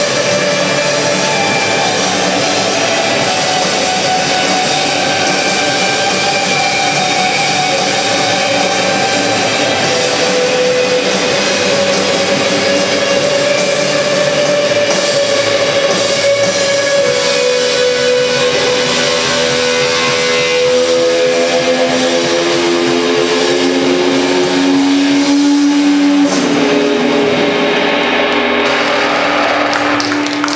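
A live shoegaze rock band playing a loud, dense wall of electric guitar noise with drums. Long held notes sit over the wash and step lower in pitch through the second half.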